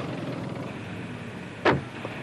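Steady city street traffic background, with one short, sharp sound near the end.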